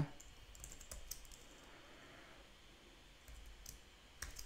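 Faint computer keyboard typing: a few soft keystrokes in two short runs, near the start and near the end.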